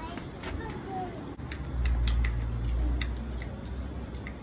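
Children's faint voices with a few sharp clicks, and a low rumble on the microphone for about a second and a half in the middle.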